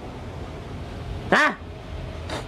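A man's single short vocal exclamation, like "ha", about one and a half seconds in, with its pitch rising then falling, over a low steady background hum.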